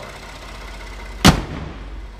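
Ford F-150's 3.5-liter EcoBoost V6 idling steadily, then the truck's hood is slammed shut with one loud bang about a second and a quarter in.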